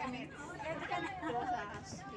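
Women talking.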